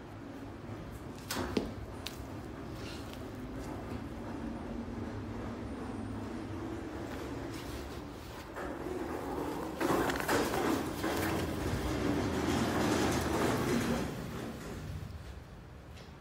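Rustling and handling noise as a Canada Goose down parka is handled and the phone moved close over it, with a sharp click about a second and a half in. The rustling grows louder about ten seconds in and eases off near the end.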